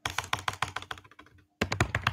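Fast typing on a computer keyboard: a quick run of key clicks, a short break about one and a half seconds in, then another rapid burst of keystrokes.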